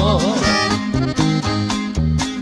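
Norteño music: a button accordion plays a melodic fill between sung verses over a steady, repeating bass line.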